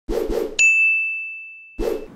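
Intro sound effect: two quick soft hits, then a bright bell-like ding whose high ring fades away over about a second, and another soft hit near the end.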